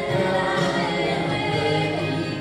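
A man and a woman singing a gospel worship song into microphones over a steady musical backing, with notes held throughout.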